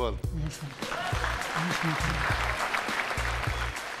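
Studio audience applauding, building up about a second in, over game-show background music with a pulsing bass beat.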